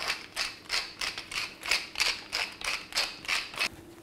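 Wooden pepper mill twisted by hand, grinding black peppercorns in a quick, regular run of short grinding crunches, about three or four a second.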